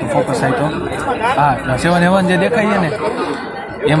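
Speech only: a man talking, with people chattering around him.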